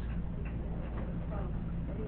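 Quiet classroom room tone: a steady low hum with faint, distant voices.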